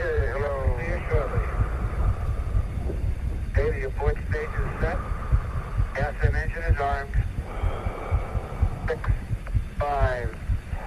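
Archival Apollo radio transmissions: short, thin bursts of voice over the radio link, a few seconds apart, over a continuous deep throbbing rumble.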